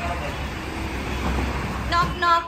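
Road traffic noise: a steady rumble of passing vehicles, with a faint horn among it.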